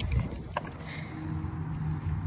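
Wind buffeting a phone's microphone, a low rumble, with a couple of short knocks from the phone being handled in the first half-second.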